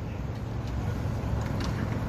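Steady low engine rumble in the background, with a few faint clicks.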